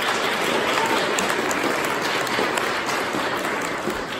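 Audience applause: many people clapping at once, steady and loud, beginning to ease off near the end.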